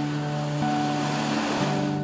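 Surf: small waves breaking and washing up a beach, cutting off abruptly at the end, with soft background music playing over it.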